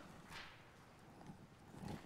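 Near silence with a few faint soft rustles and taps as a Bible's pages are turned at a pulpit.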